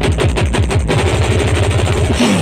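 Live band music played loud through a PA, at this point a rapid drum roll of deep hits, each falling in pitch, about ten a second.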